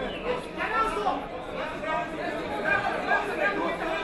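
Crowd chatter: many overlapping voices of spectators talking and calling out at once, with no single voice standing out.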